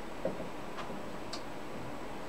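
Marker pen writing on a whiteboard: a few light taps and a short squeak of the tip about two-thirds of the way through.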